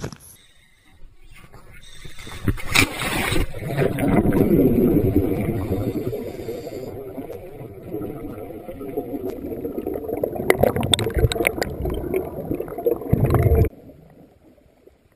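Muffled rush of water and boat noise, heard through a camera's waterproof housing as scuba divers enter the sea. Knocks and clatter come toward the end, then the sound drops away suddenly as the camera goes under water.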